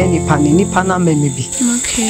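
A steady high-pitched insect trill, like crickets, runs under a voice speaking and a low sustained tone that stops about a second and a half in.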